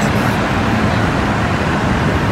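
Steady rushing noise of air-handling fans: the hall's air conditioning and air purifiers running continuously.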